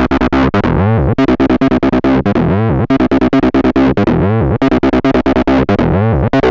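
Acid bassline from a hardware Roland TB-303 emulator, distorted through the Eventide CrushStation overdrive/distortion plugin. It plays a fast run of gritty notes, about eight a second, with the resonant filter sweeping down and back up every couple of seconds.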